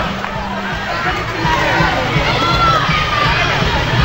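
Crowd of spectators in an indoor roller rink, many voices shouting and calling over one another, with music playing underneath.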